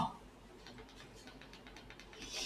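Faint light clicks, several a second, from a stylus tapping on a touchscreen display.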